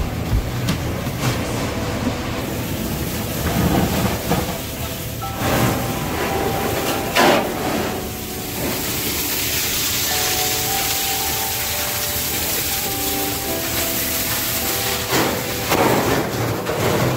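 Steady rushing hiss of water spray and steam from a fire hose working on burning furniture stock, growing stronger about halfway through, with a few knocks. Held steady tones sound under it throughout.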